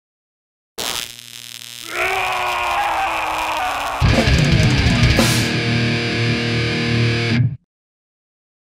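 Short heavy-metal music sting with distorted electric guitar: it starts about a second in, fills out about two seconds in, comes in fully with a heavy low end at about four seconds, and cuts off suddenly near the end.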